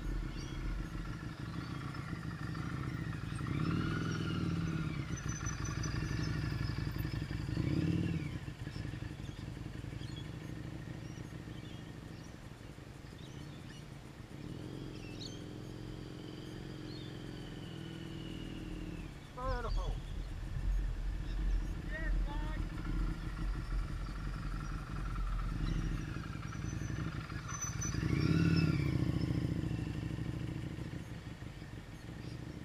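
Motorcycle engine running as the bike rides around, its sound swelling as it comes close about four and eight seconds in and again, loudest, near the end.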